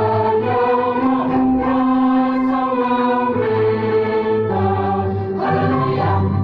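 Church choir of men's and women's voices singing a sacred song in parts: slow, sustained chords, one held for about two seconds.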